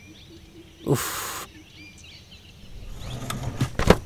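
Faint bird chirps in the background; about a second in, a short burst of hiss. From about three seconds on, a run of clicks, knocks and rustling as papers and small objects on a desk are handled and searched through.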